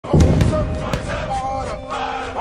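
Channel logo intro sting: a heavy low hit at the start, a few sharp glitch clicks in the first second, over sustained musical tones.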